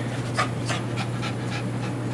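Boston terrier panting with open mouth, quick breaths about three a second, over a steady low hum.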